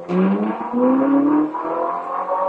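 Ferrari 458 Italia's naturally aspirated V8 accelerating hard away, its pitch rising through the revs, with an upshift about one and a half seconds in before it climbs again.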